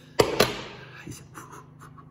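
Kitchenware being handled on a wooden board or counter: two sharp knocks in quick succession, then a few light clicks.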